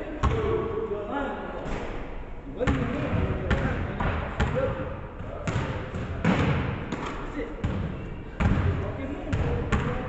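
Basketballs bouncing on a hardwood gym floor: a string of irregularly spaced thuds that ring on in the big hall, with voices in the background.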